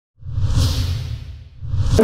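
Two sound-effect whooshes over a low rumble. The first swells up and fades away within about a second, and the second builds toward the end.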